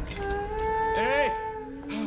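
A man's wordless vocal sounds: a long held note, a short cry that rises and falls in pitch about a second in, then a lower held note near the end. They are the sounds of someone reacting to the burn of very hot, spicy food.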